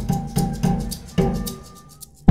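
Electronic percussion composition of deep and high drums beating out a Morse-code rhythm, about three strokes a second. A thin steady beep tone is held in the second half, and the strokes fade near the end.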